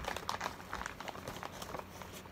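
Plastic mailer bag crinkling and rustling in irregular crackles as hands pull it open and reach inside.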